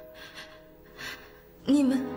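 A woman's short, breathy gasps, a few in a row, as she struggles for breath between words; her voice comes back in near the end. A low, sustained musical drone holds underneath.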